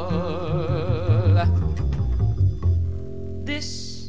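Live jazz: a long held sung note with wide vibrato ends about a third of the way in, leaving plucked upright bass notes walking on alone, with a short high hiss near the end.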